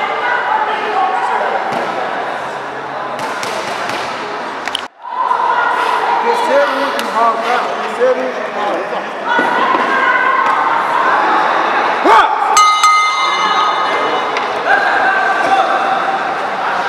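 A boxing ring bell struck near the end, ringing out for about a second and a half to signal the start of the round, over voices and crowd chatter echoing in a large hall.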